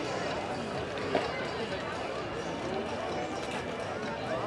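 Background chatter of people talking outdoors, not close to the microphone, with one brief knock about a second in.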